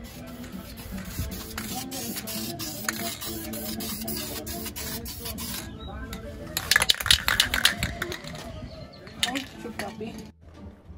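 Aerosol spray-paint can hissing in a long continuous spray as paint goes onto a brake caliper, stopping about five and a half seconds in. A quick run of loud sharp clicks follows about a second later. Steady background music plays underneath.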